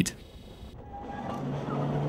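A small narrow-gauge mine train running. Its low, steady hum fades in and grows louder over the second half.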